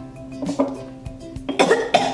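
Background music, and near the end a girl coughs and gags loudly, retching on a mouthful of baby food she finds revolting.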